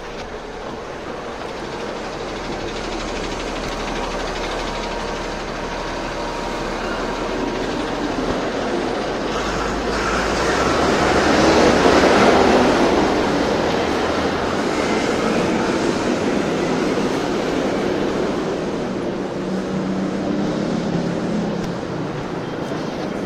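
A passing elevated commuter train: a broad rushing rumble that swells to its loudest about halfway through and then slowly fades.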